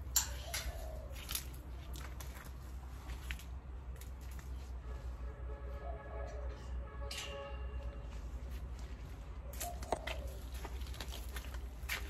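Quiet handling of potted orchids: a few sharp knocks and rustles near the start and again near the end over a steady low hum, with a faint drawn-out call in the middle.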